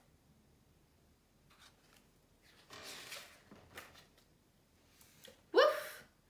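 Soft rustling and handling of a hardcover picture book as its page is turned, with a few faint clicks, then a short voiced 'woof!' imitating a dog near the end.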